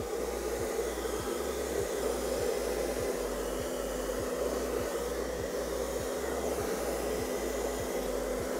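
Handheld hair dryer running steadily: an even rush of air with a faint low motor hum.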